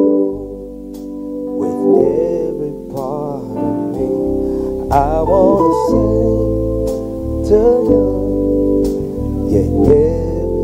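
A live gospel band playing slowly: held keyboard and organ chords, with a melody line that bends in pitch over them. A few light percussion strokes sound through it, and deep bass notes come in about four seconds in.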